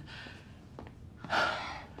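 A single short, breathy voice sound about a second and a half in, a sharp breath without a clear voiced pitch.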